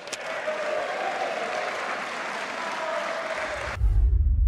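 Members of the European Parliament applauding as a resolution is declared adopted: steady applause that cuts off abruptly near the end, where a deep low rumble comes in.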